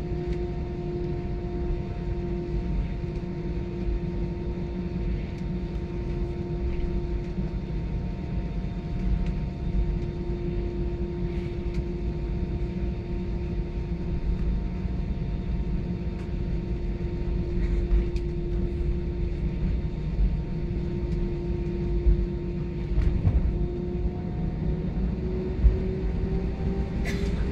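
Jet engines of an Airbus A320-family airliner at taxi power heard inside the cabin: a steady hum with a low rumble from the wheels. A few light bumps come through, and near the end the engine tone starts to rise in pitch as thrust builds.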